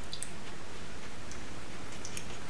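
Faint mouth sounds of a person chewing an Aji Limon pepper: a few soft, short clicks over a steady hiss of room tone.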